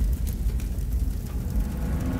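Deep, steady rumble of a cinematic explosion sound effect dying away, after its boom, under a fiery logo animation.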